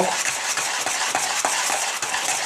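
Epoxy resin and ATH filler mix being stirred in a plastic tub: a steady scraping with faint irregular ticks of the stirrer against the tub.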